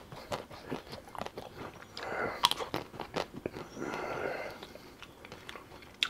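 Close-miked eating sounds of ice cream being bitten and chewed, with scattered sharp crunches and clicks, and two longer, softer stretches about two and four seconds in.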